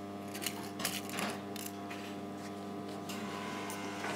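Rustling of fabric and paper as pinned pocket pieces are handled, mostly in the first couple of seconds, over a steady electrical hum.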